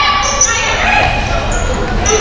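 Basketball being dribbled on a hardwood gym court, with short high-pitched sneaker squeaks, echoing in a large hall.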